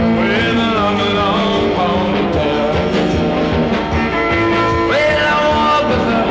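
A 1950s-style rock and roll record playing: a full band with a steady beat and a lead melody line that slides in pitch.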